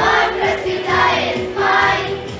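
Children's choir singing, the voices swelling loudly three times in about two seconds.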